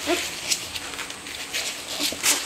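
Newborn border collie puppies giving a short rising squeak near the start, amid brief soft rustling and wet noises as the mother nuzzles the litter.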